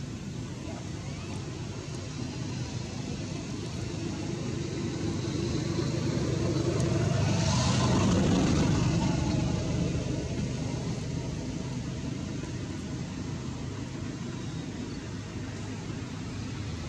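A motor vehicle passing by: its sound swells to its loudest about halfway through and then fades away, over a steady low background hum.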